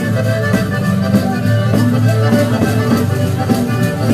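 Live pizzica folk music: an accordion carrying the melody with a fiddle, over a steady beat.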